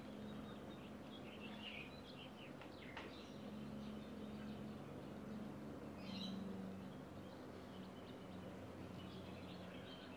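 Faint ambience of birds chirping intermittently over a low steady hum, with one soft click about three seconds in.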